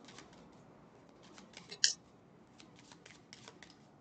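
A deck of cards being shuffled and handled: faint scattered clicks of cards against each other, with one louder snap a little under two seconds in.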